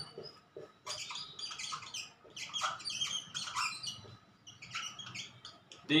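Marker squeaking and scratching on a whiteboard in a run of short, irregular strokes as words are handwritten.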